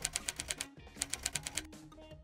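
Typewriter-style typing sound effect: two quick runs of rapid key clicks, over soft background music.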